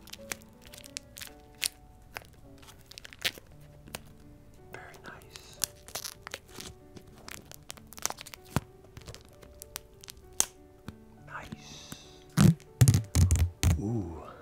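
Soft background music under the crinkling, tapping and clicking of a plastic-wrapped spiral-bound sketch pad being handled close to the microphone, with a run of loud, heavy thumps near the end.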